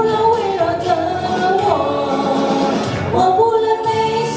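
A woman singing a pop ballad into a microphone over recorded backing music, heard through stage speakers in a hall; she glides between notes and holds a long steady note near the end.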